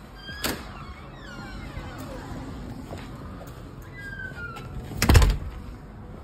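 A metal door's lever handle clicks its latch open, followed by faint high falling squeaks. About five seconds in the door shuts with a heavy thud, the loudest sound.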